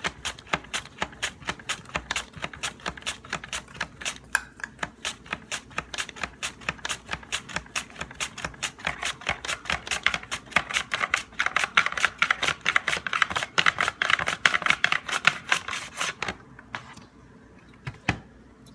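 A potato in a hand guard being pushed rapidly back and forth across the straight blade of a Tupperware Mandolin slicer set to its thinnest setting, each stroke a sharp scraping click in a quick, even rhythm of about four a second. The strokes stop about two seconds before the end.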